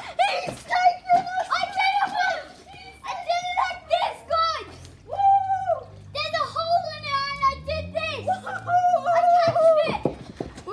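Children yelling and cheering excitedly, with several long, high-pitched held shouts.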